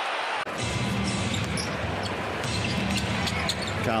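Arena crowd cheering, cut off abruptly about half a second in. Then live game sound: a basketball being dribbled on the hardwood court over the arena's background noise.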